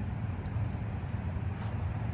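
Steady low outdoor rumble, with a few faint ticks about half a second and a second and a half in.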